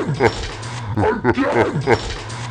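A man's wordless, strained yelling into a studio microphone: a string of short cries, each falling in pitch, about three a second.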